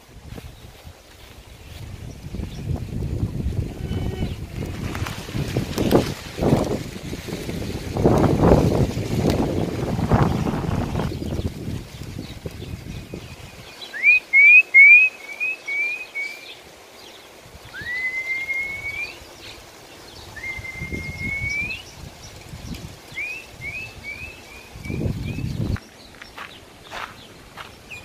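Low rumbling noise on the microphone, strongest in the first half. Then a songbird calls: a quick run of five or six short chirps, two drawn-out rising whistles, and another run of short chirps near the end.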